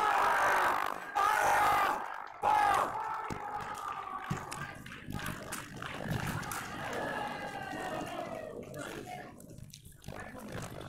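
A sabre fencer's loud shouts of triumph on scoring the bout-winning fifteenth touch: three yells over the first three seconds, then quieter voices in a large hall.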